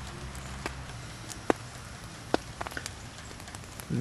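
Quiet steady low hum with a handful of sharp, irregular clicks, the clearest about a second and a half in and a small cluster near the end.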